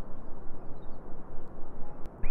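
Outdoor ambient noise picked up while walking: a steady low rumble with a few faint bird chirps.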